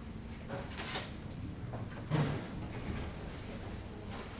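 Metal lift doors sliding open: a short scrape about a second in, then a louder knock-and-scrape a little after two seconds.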